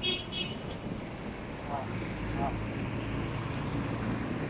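Low, steady hum of city street traffic, with a vehicle's engine hum growing a little louder about halfway through.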